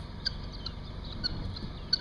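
A flock of domestic guinea fowl calling: short, high calls at irregular intervals, several in the two seconds.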